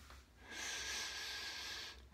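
A long breath out, heard as a steady hiss lasting about a second and a half.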